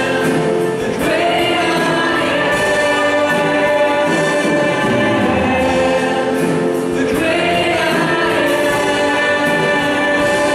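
A church worship band leading congregational singing of a slow praise song: several voices holding long sung notes over acoustic guitar and keyboard.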